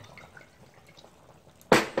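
Soju being poured from a glass bottle into a shot glass: a faint trickle with small clinks. Near the end comes a sudden loud burst.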